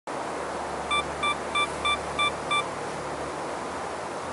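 Six short, high electronic beeps, evenly spaced at about three a second, over a steady hiss.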